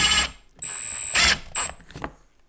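Small powered screwdriver whirring in several short bursts as it drives a screw to fasten a switch-and-outlet panel's frame onto an ammo can lid.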